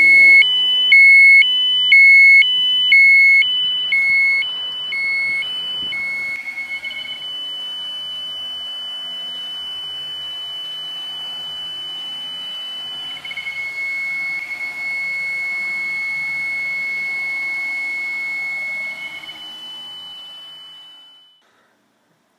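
Electronic alarm of a RadEye B20 radiation survey meter, loud and two-toned. High and low beeps alternate about once a second for the first six seconds, then it holds long steady tones that switch pitch twice and cut off shortly before the end: the meter signalling a high radiation reading.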